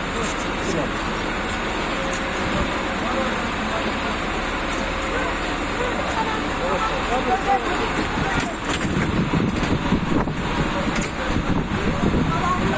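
Steady street and vehicle noise with indistinct voices of people around it, and a few short knocks later on.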